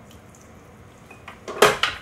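Red wine trickling faintly from a small glass measuring cup into a stand mixer's stainless steel bowl, then a quick cluster of sharp clinks and knocks near the end as the glass cup is handled and set down.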